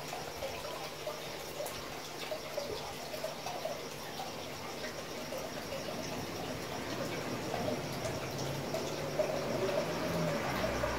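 Faint, steady sound of moving water, with small ticks through it.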